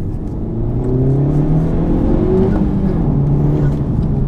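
2017 Honda Civic Type R's turbocharged 2.0-litre four-cylinder heard from inside the cabin while driving. The revs climb for about two and a half seconds, then drop and settle lower.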